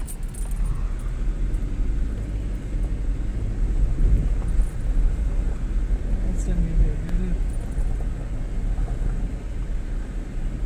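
Steady low road and engine rumble of a car driving slowly, heard inside its cabin, with a brief snatch of voice about six and a half seconds in.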